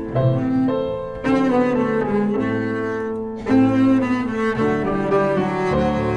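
Double bass played with the bow, holding long sustained notes in a slow melody, accompanied by grand piano chords that come in about a second in and again midway.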